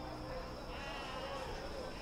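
A sheep bleating faintly, one short call about a second in, over quiet background ambience.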